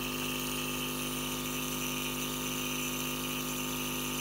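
Compressor-driven jet nebulizer running with a steady hum and hiss as it pumps air through its medication cup to make the mist.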